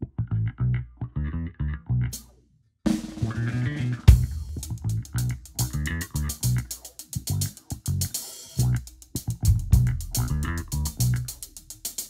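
A bass line plays alone for about two and a half seconds and stops briefly. Then a drum kit with a 1971 Ludwig snare comes in with the backing band, landing a loud crash-and-kick accent about four seconds in and keeping steady cymbal and drum strokes over the bass and guitar.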